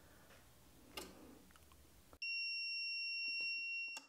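A steady, high-pitched electronic alarm beep from the power inverter starts about two seconds in and stops near the end. It sounds as the LiFePO4 battery's protection cuts off the roughly 186-amp load, and the faint background noise drops out at the same moment.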